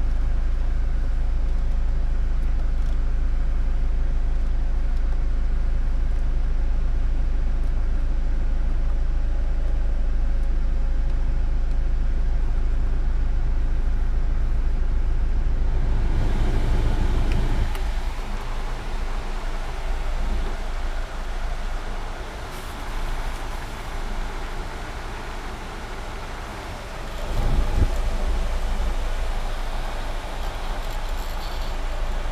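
Hyundai Tucson's climate-control blower fan and the air rushing from the dashboard vents, over a steady low hum. About 16 seconds in, the rush turns louder and hissier as the fan setting is changed. A brief louder swell comes near the end, while an anemometer is held at the vent.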